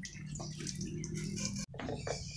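Water running from a tap and splashing over hands being washed under it, stopping abruptly near the end.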